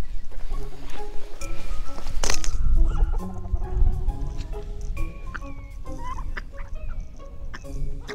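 Chickens clucking over light music, with wind rumbling on the microphone in the first few seconds.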